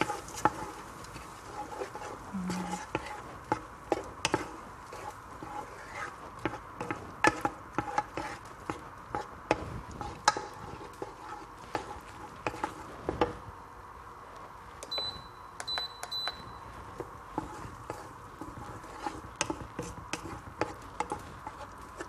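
Mixed vegetables being stirred in a pot: scattered clicks and scrapes of the utensil and vegetables against the pot over a steady low hiss. A few short high beeps sound about fifteen seconds in.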